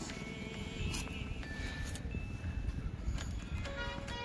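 Background music with a melody of held notes.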